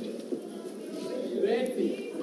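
Hushed, muffled talk between two people, low and indistinct, a little louder near the end.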